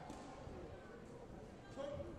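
Faint background voices talking in a large indoor sports hall, too low to make out, over the hall's steady background hum.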